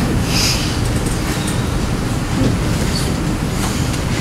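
Steady low rumble of background room noise, with a brief soft hiss about half a second in.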